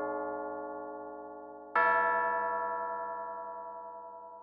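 Slow music from a film score: a keyboard instrument playing rich, bell-like chords. Each chord starts sharply and rings while slowly fading, and a new chord is struck a little under two seconds in.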